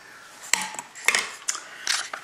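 Glass candle jars with metal lids clinking and knocking together as they are handled, set down and picked up: several sharp, separate clinks.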